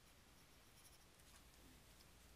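Near silence, with faint scratches of a stylus drawing a line on a tablet, a couple of soft strokes around the middle.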